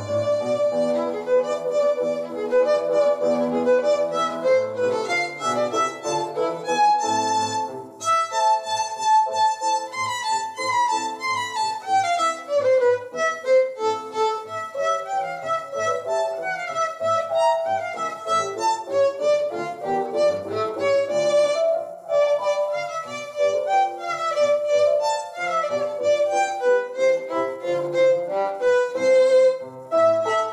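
Violin played with a bow: a solo piece of quick, running notes.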